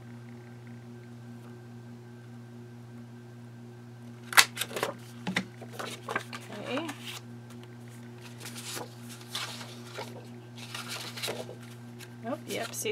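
Paper pages being handled and fitted into a metal ring binder: after a few seconds of steady electrical hum come a sharp click about four seconds in, then irregular rustles and smaller clicks.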